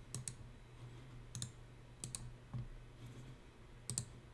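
Faint computer mouse clicks, a handful spread through, some in quick pairs, over a low steady hum.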